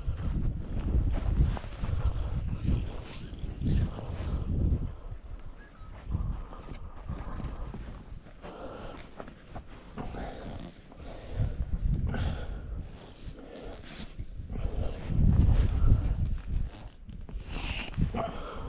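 Footsteps on grass and the rustle and clicks of a nylon long net and its stake being handled, with gusts of wind rumbling on the microphone.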